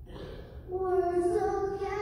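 A young girl singing the national anthem solo, with no accompaniment. A held note ends right at the start, a short breath follows, then she begins a new long note under a second in that steps up slightly in pitch partway through.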